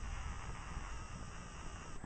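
Camera handling noise: a low, uneven rumble with faint rubbing as the handheld camera is moved.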